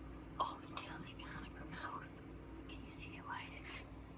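Soft, unintelligible whispering over a faint steady hum.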